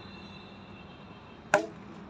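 A cricket bat striking the ball: one sharp crack about a second and a half in, with a short ring after it.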